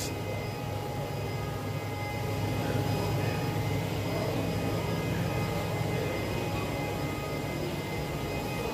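A steady low mechanical hum with a haze of hiss above it, unchanging throughout, with no distinct knocks or starts.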